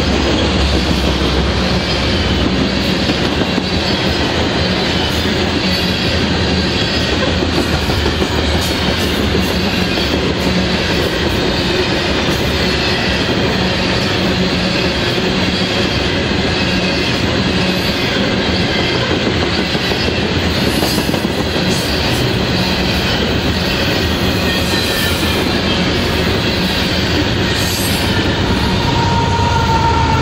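Loaded covered hopper cars of a freight train rolling past close by: steady wheel-on-rail rumble with clicking over the rail and a faint high squeal from the wheels. Near the end a whining tone comes in as a locomotive at the rear of the train draws level.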